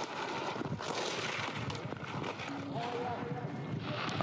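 Racing skis carving across hard, icy snow: a steady scraping hiss from the edges through the turns, with faint voices in the background.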